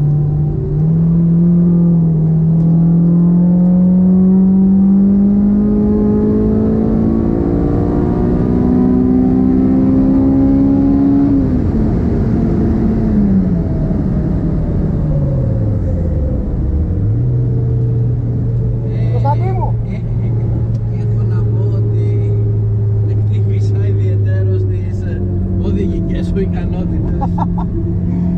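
Honda S2000's stroked F20C four-cylinder engine heard from inside the cabin over road noise. It climbs steadily in pitch for about ten seconds under acceleration, then falls away as the car slows from speed, holds a steady lower note, and rises again near the end.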